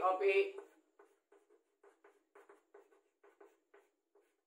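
A man's voice briefly at the start, then faint short taps and scrapes of chalk writing on a blackboard, about fifteen quick separate strokes.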